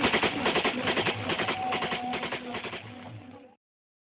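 A rapid, even run of sharp beats, about six to eight a second, under a few faint held tones. It fades and cuts to silence about three and a half seconds in.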